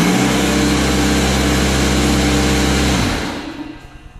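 Craftsman 15-gallon, 150 PSI portable electric air compressor running, really loud: a steady motor hum under a dense rushing clatter. About three seconds in the motor cuts off and the sound dies away within a second.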